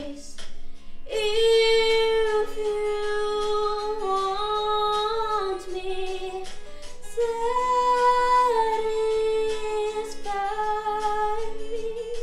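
A woman singing a slow ballad solo in long held notes, over a soft instrumental accompaniment.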